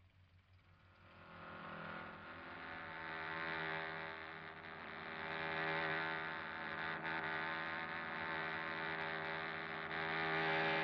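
A car engine running at a steady pitch. It fades in about a second in, then swells louder and softer as if racing past and circling.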